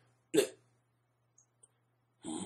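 A single short vocal sound from a person, about a third of a second in, then near silence over a faint steady low hum.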